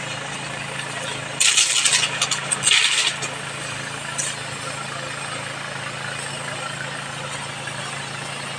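Small engine of a motorised power sprayer running steadily, with the hiss of the long spray lance misting liquid up into a durian tree. Two short, louder hisses come about one and a half and three seconds in.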